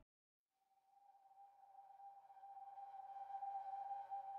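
Background music: after about a second of silence, a single steady held tone fades in slowly and grows louder, the opening note of an ambient music track.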